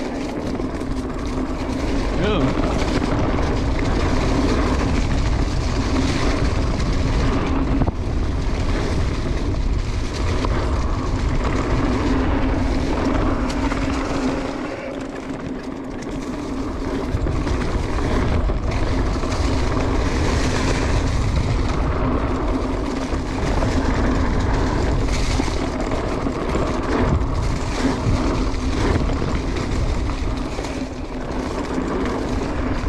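Wind rushing over the camera microphone as a mountain bike descends a leaf-covered dirt trail, the tyres rolling and the bike rattling over bumps, with a steady hum underneath. It eases briefly about halfway through, then picks up again.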